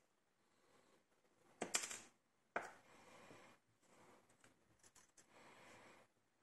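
Small steel lock pins handled with metal tweezers during disassembly of a lock cylinder. There is a short rattle near two seconds in, then a sharp click followed by about a second of scraping, then light clicks and rustling.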